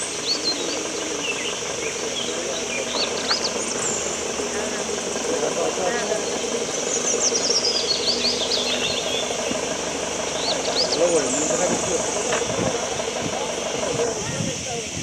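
A train's engine running with a steady drone as it moves slowly along the track, with birds chirping throughout.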